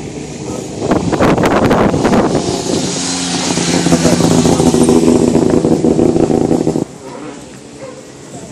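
Rally car engine at high revs as the car speeds past close by. It comes in loud about a second in, holds a steady high note, and cuts off suddenly near the end.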